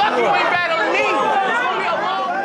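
Many voices talking over one another: a packed crowd chattering and calling out at once.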